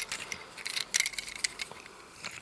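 A scatter of light clicks and rattles from a plastic Hasbro Combiner Wars Dragstrip action figure being handled and turned in the hand.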